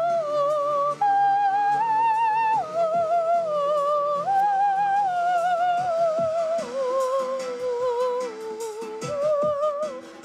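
A woman's voice singing a slow melody in long held notes with vibrato. The melody rises over the first few seconds, then steps down gradually and lifts again near the end, over sustained keyboard chords.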